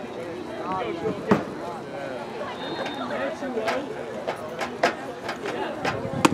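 Voices of players and spectators at a baseball field, chattering and calling out, too distant for words to be made out, with a few sharp knocks or claps.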